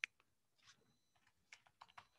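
Faint keystrokes on a computer keyboard: an irregular run of quick taps as a short word is typed, the sharpest tap at the very start.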